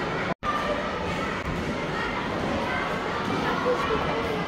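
Indistinct overlapping chatter of a group of people, children among them. There is a sudden brief dropout to silence just after the start.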